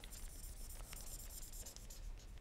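Faint scratching of a pen writing on a whiteboard, with a few small ticks as it touches the board.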